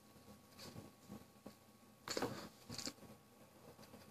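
A faint draw on a mechanical vape mod, then two short breathy puffs about two seconds in as the vapor is breathed out.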